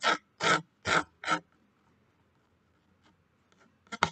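Pencil scratching on paper in quick sketching strokes: four short strokes in the first second and a half, then another near the end.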